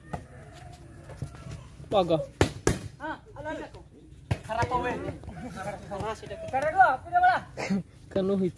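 Hands striking a plastic volleyball during a rally, two sharp hits in quick succession about two and a half seconds in and another just after four seconds, amid shouting from players and onlookers.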